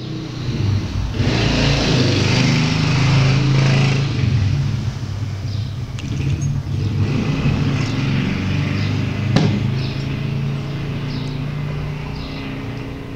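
A motor vehicle engine running steadily, with a low hum under a broad rushing noise that swells about a second in and eases off after about four seconds. A single sharp knock about nine seconds in.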